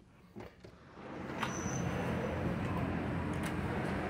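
Steady outdoor port noise swelling in as the balcony door of a cruise ship cabin opens: a broad rush over a low hum, with a click about one and a half seconds in and another near the end.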